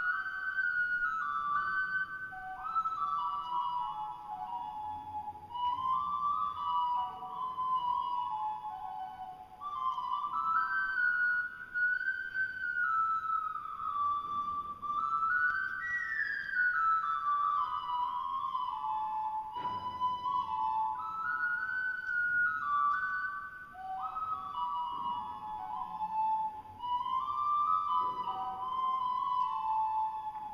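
A Mountain Ocarina playing a slow melody, one pure flute-like note at a time, moving up and down in steps. The tune comes in phrases of a few seconds with short breaks between them.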